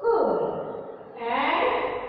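A woman's voice speaking: one drawn-out word whose pitch falls, then after a short dip a rising, breathy utterance.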